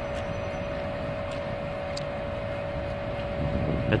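Steady outdoor city background noise, the even rush of street traffic, with a constant mid-pitched hum under it that stops near the end and a few faint ticks.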